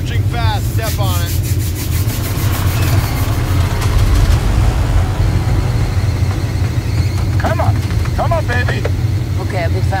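Film-trailer soundtrack of a car driving: a steady low engine and road rumble heard from inside the cabin, with brief voices at the start and in the last few seconds.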